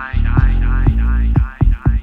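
Instrumental reggae dub with a deep, steady bassline and a drum hit about every half second, under a repeating falling figure. In the second half the bass drops out, leaving the drum hits with short gaps between them.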